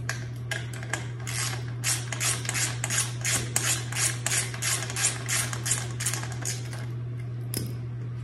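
Socket wrench ratchet clicking in a quick run, about three clicks a second, as a nut is backed off a carriage bolt on a kicksled's leg bracket, with one more click near the end. A steady low hum lies underneath.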